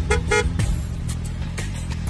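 Two short car-horn toots right at the start, over steady background music.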